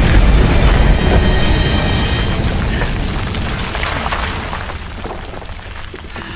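A booming crash of rock as a robot is slammed into a cliff face, with rubble falling, loudest at the start and dying away over several seconds, under background film music.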